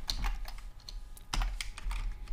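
Computer keyboard typing: an irregular run of quick keystrokes, with one sharper keystroke about a second and a half in.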